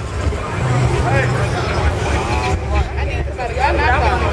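Infiniti FX35's V6 engine running low as the SUV rolls slowly past at walking pace, with people talking nearby, loudest near the end.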